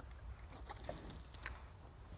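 Low, steady wind rumble on the microphone, with a few faint short clicks, the sharpest about one and a half seconds in.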